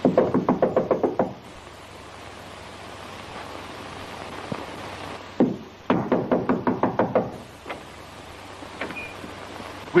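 Knuckles rapping on a door in two quick bursts of about ten knocks each, at the start and about six seconds in, with a single knock just before the second burst; the knocking stands in for a doorbell that is out of order. A steady hiss of an old film soundtrack fills the gaps.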